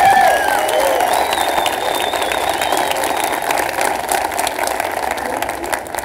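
Audience applauding, a dense patter of many hands that slowly dies down toward the end.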